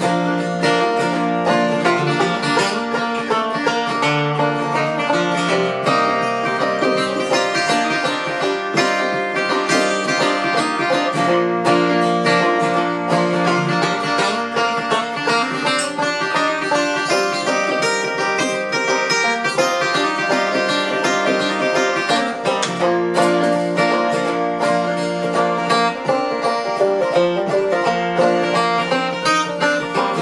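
Banjo and handmade acoustic guitar playing together in an instrumental stretch of a folk song, plucked notes running in a steady rhythm.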